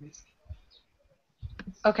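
A speaker's voice trailing off, then a short near-silent pause broken by a faint click about a second and a half in, then a woman's voice starting to speak near the end.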